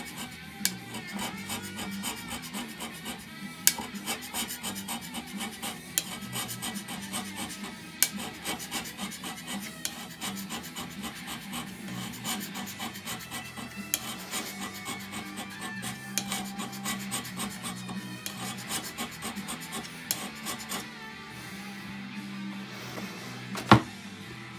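Hand scraper taking finishing passes across the top of a metal lathe bed: a quick, continuous run of short rasping strokes of the blade on the metal.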